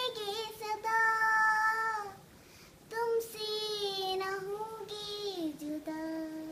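A child singing a Hindi song unaccompanied, in long held notes, with a short break about two seconds in. Near the end the voice slides down to a lower held note.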